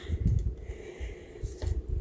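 Soft low bumps and rumbling, with a faint click about one and a half seconds in.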